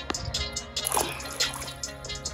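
Background music over small water splashes as a bullhead catfish is let go into shallow river water and swims off.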